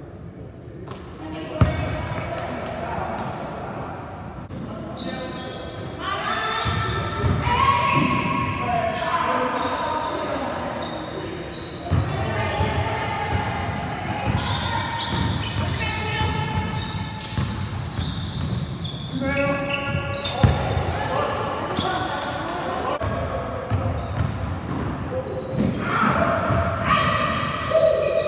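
Basketball bouncing on a hardwood gym floor during play, with players calling out, echoing in a large hall. There is a sharp knock about a second and a half in and another near twenty seconds.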